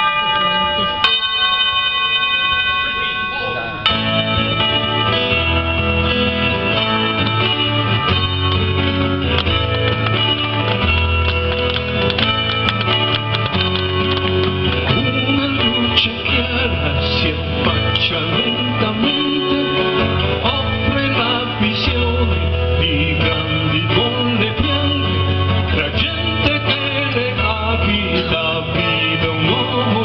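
Live progressive rock band opening a song. A held, ringing chord sounds for about four seconds, then the full band comes in with electric bass, drums, guitars and keyboards.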